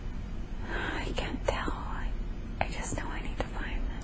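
A woman whispering a few words, too faint to make out, over a low steady hum.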